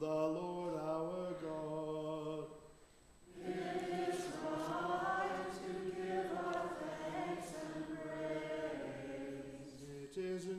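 A single voice chants a sustained line of the liturgy. After a brief pause about three seconds in, the congregation and choir sing the response together in unison.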